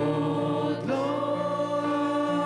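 Background choral music: a choir singing held chords, moving to a new chord about a second in.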